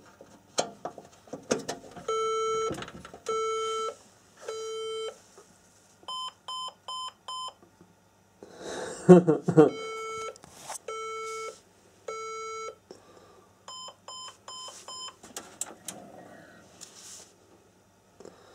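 HP Z440 workstation's motherboard beeper sounding a POST error code: three long low beeps followed by five short higher beeps, the sequence heard twice, after a few clicks near the start. The uploader traced the fault to a bad RAM stick.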